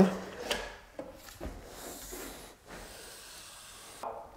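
Thick drywall joint compound being pumped into and squeezed through a compound tube: soft rubbing and sliding noise with a few light knocks in the first second and a half.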